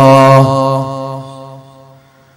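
A man's voice holding one long chanted note at a steady pitch, which then fades away over about a second and a half.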